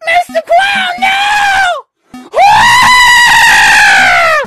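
A cartoon child's voice screaming in pain as the arm is torn off. First comes a shorter scream, then a long, loud held scream from about two and a half seconds in that sags in pitch as it dies away.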